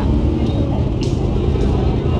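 A motorcade of cars passing on the road, a steady low rumble of engines and tyres, with people talking nearby.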